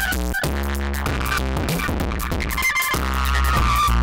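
Dave Smith Tempest analog drum machine beat playing through an Elysia Karacter saturation and distortion unit, blended at a 50% wet-dry mix to keep the drums' punch under heavy distortion. Long deep bass notes run under the drum hits, breaking briefly about half a second in and again about three seconds in.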